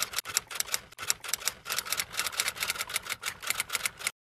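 Typewriter sound effect: a rapid, even run of key clicks, about seven a second, accompanying text being typed out on screen, cutting off abruptly at the end.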